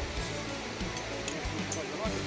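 Background music with a bass line of held notes that step from one pitch to the next every half second or so, with a melodic line gliding over it.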